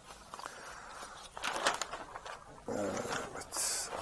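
Newspaper pages rustling and crackling as they are turned and folded, in several short rustles starting about a second in, with a brief high hiss of paper sliding shortly before the end.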